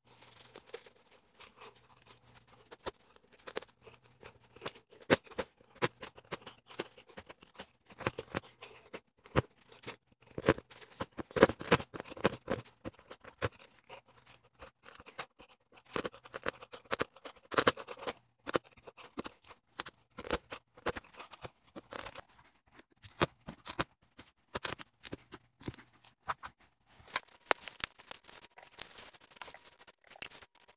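Serrated knife sawing through a car floor mat to cut a round hole: many short, irregular rasping strokes of blade against mat.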